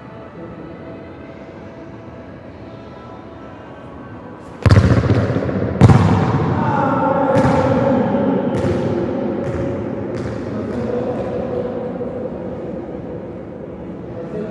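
A football is kicked hard on an indoor futsal court about four and a half seconds in. About a second later comes a louder bang as the ball strikes at the far end, then several fainter knocks as it bounces, each echoing through the hall. Faint music plays underneath.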